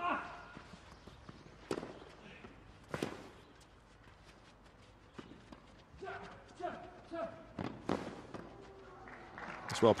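Tennis ball struck by rackets in a rally on a clay court: a few sharp, separate pops spaced unevenly, with faint voices in between.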